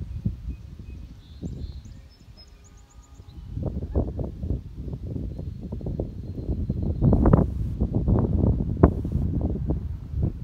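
Wind buffeting the microphone in irregular gusts, a low rumble that eases off about two seconds in and builds again from about three and a half seconds, strongest around seven to nine seconds.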